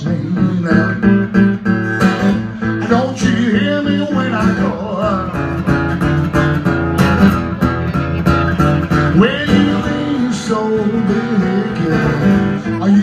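Solo acoustic guitar playing blues, a continuous run of picked notes and strums in a steady rhythm.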